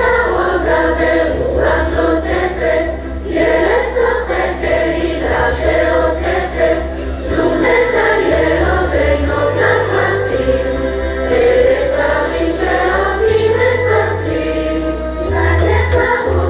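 A choir of children and adults singing a Hebrew song into microphones over a backing track with a bass line that moves between sustained low notes.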